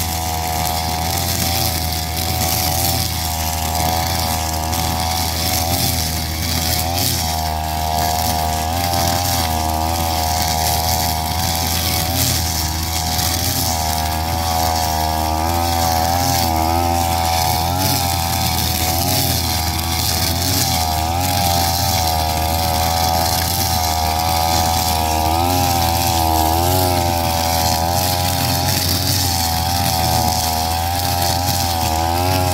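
Backpack brush cutter fitted with both a nylon string head and a steel blade, its engine running steadily as it is swung quickly through weeds and mugwort. The engine pitch wavers slightly as the head cuts.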